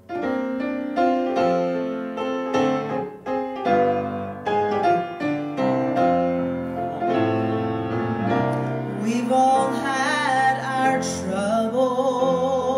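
Piano introduction to a gospel song starting suddenly, with struck chords. A voice with vibrato comes in about nine seconds in.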